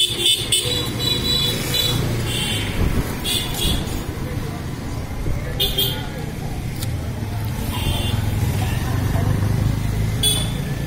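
Street traffic: a steady low engine rumble, broken by several short high-pitched horn beeps, with voices.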